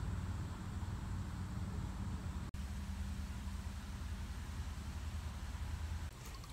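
A steady low mechanical hum with an even hiss over it, cutting out for an instant about two and a half seconds in.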